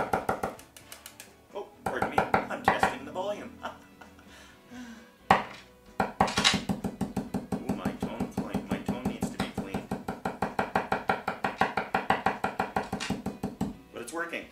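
Screwdriver tapping on the bridge mini-humbucker pickup of a short-scale Epiphone Viola bass, heard through the amplifier as amplified clicks and thumps: a few short bursts, then a fast, even run of taps, several a second, from about halfway in to near the end. This is a check that the pickup works and that the tone control changes the sound.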